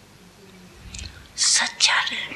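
A quiet pause, then a woman's voice starting to speak about two-thirds of the way in, opening with strong hissing sounds.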